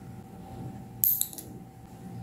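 Metal nail clipper snapping shut on a long fingernail: one sharp click about a second in, followed by a couple of lighter clicks.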